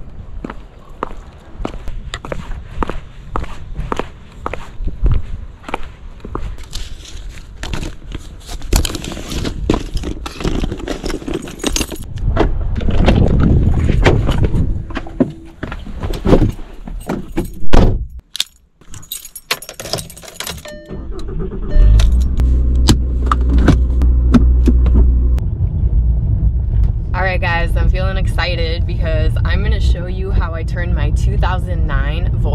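Footsteps and jangling keys with scattered knocks and thuds. About three-quarters of the way through, a Volkswagen Beetle's engine starts and runs at a steady low idle.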